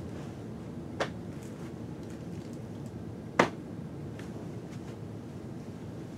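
Two sharp clicks, a small one about a second in and a louder one a little past three seconds, over a steady low room hum.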